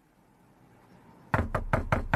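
Knocking on a door: four quick raps, about five a second, starting a little over a second in, after a faint rising hiss.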